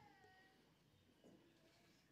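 Near silence: room tone, with one faint short high-pitched squeal at the very start that fades within half a second.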